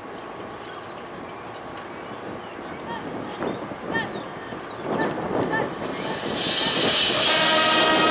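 Marching band music: a quiet stretch with scattered voice-like calls, then the full band swells into a loud crescendo of sustained brass chords from about six seconds in.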